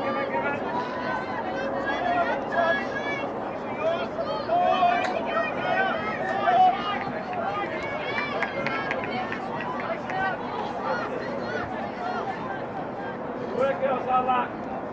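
Overlapping women's voices calling out and chattering across an open playing field. Short shouted calls come and go throughout, as touch football players talk to each other during play.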